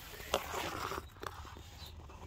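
Light crunching and scraping of a person moving on gravel, with one sharp click about a third of a second in and a few fainter ticks later.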